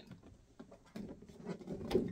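Faint rustling and light knocks of a large cardboard doll box with a plastic window being handled and lowered, becoming more audible about a second in.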